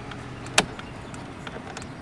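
A single sharp click from the four-way flasher controls of a Geo Metro converted to electric, about half a second in, over a faint steady hiss.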